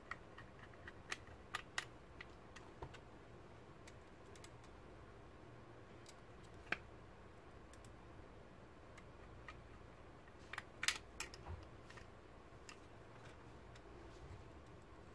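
Small screwdriver and screws on a metal laptop hard-drive caddy: scattered light clicks and taps of metal on metal as the drive is screwed into its caddy, with a quick run of louder clicks about three-quarters of the way through.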